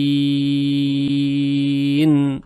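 A male Quran reciter holding one long, steady sung note: the drawn-out final syllable of the verse word al-unthayayn at a verse pause. A faint click comes about a second in.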